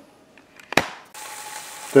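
A sharp click, then a little past a second in a steady sizzle starts: the pineapple glaze on a just-broiled smoked ham steak bubbling on its hot metal broiler pan.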